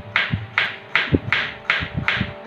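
Kitchen knife slicing through an onion on a cutting board, about three quick strokes a second, each a crisp cut ending in a light knock on the board. Faint background music runs underneath.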